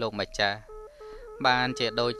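A man narrating in Khmer, with a short pause about a second in where steady held tones of background music carry on under the voice.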